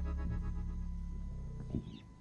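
A live forró gospel band's final held keyboard chord ringing out and fading away at the end of a song. A brief faint sound comes near the end as the chord dies.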